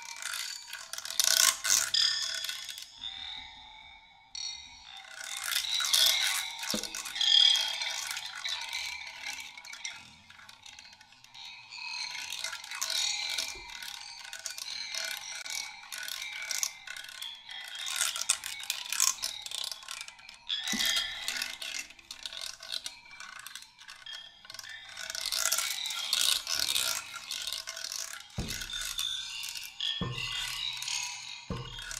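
Dry reeds rattling and scraping against one another: dense, fine clicking that swells and dies away in surges every few seconds.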